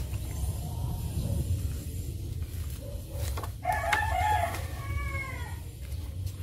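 A rooster crows once, a call of about two seconds starting a little past halfway, with its pitch bending down at the end. A few light clicks of album pages being handled come just before it, over a steady low hum.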